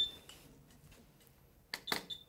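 Servo-n neonatal ventilator running its pre-use check: mostly quiet, with two short clicks near the end.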